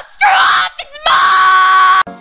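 A person's voice screaming in anger: a short shout, then one long held scream from about a second in.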